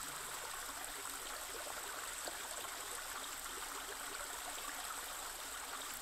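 Faint, steady rushing of running water, like a stream, continuing evenly with no change.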